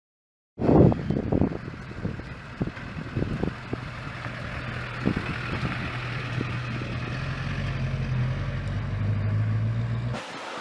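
Pickup truck engine running and pulling away, a steady low hum that grows louder near the end, with several sharp knocks and clatter in the first few seconds.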